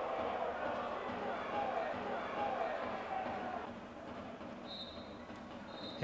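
Pitch-side field sound at a small football ground: distant, indistinct shouts from players and spectators that fade about two-thirds of the way through. Near the end comes the referee's whistle, two short faint blasts signalling full time.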